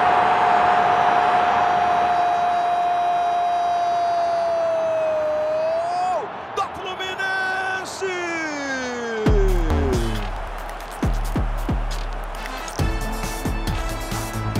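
Stadium crowd noise with one long held note over it, which bends and breaks off about six seconds in. A music sting then takes over, with falling sweeps and heavy bass hits from about nine seconds in.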